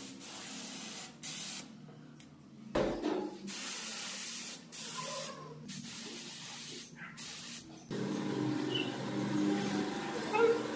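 Paint spray gun hissing in short bursts that stop and start several times, spraying paint through a paper stencil onto a wall.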